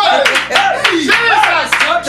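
Voices exclaiming in reaction, with hand clapping throughout.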